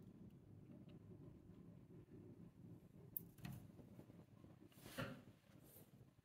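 Near silence: room tone, with one faint click about three seconds in.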